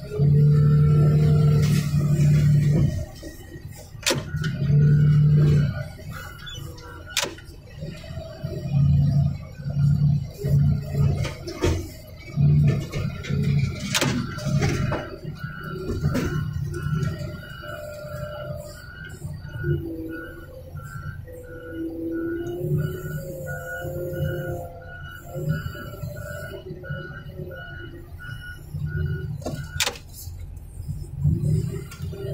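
Front loader's engine and hydraulics working in bursts as its pallet forks pick up and lift a car, each burst a loud steady hum that stops and starts. From about halfway a short high beep repeats about one and a half times a second.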